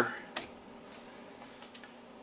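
Light handling clicks at a stainless steel saucepan as a stick of butter is put in: one sharp click about a third of a second in, then two faint ticks a little past the middle.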